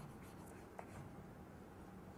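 Faint scratching of a marker drawing lines on a white board, with a light tick a little under a second in.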